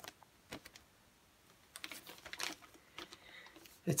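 A vinyl LP in a clear plastic sleeve being handled close to the microphone: the plastic gives quiet, scattered crinkles and small clicks, with a short cluster about two seconds in.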